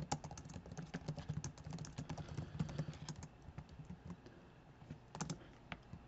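Computer keyboard typing: a quick run of quiet keystrokes that thins out after about three seconds, with a couple of last key presses near the end.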